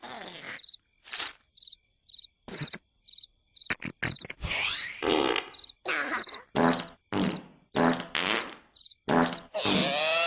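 Cartoon soundtrack: a cricket chirps in short, evenly repeated chirps while a cartoon larva makes loud vocal noises. The noises grow denser from about four seconds in, coming in short bursts roughly every half second.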